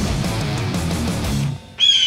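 Heavy rock music with electric guitar, cutting out about three-quarters of the way through. Just before the end a high, steady whine starts, sinking slightly in pitch.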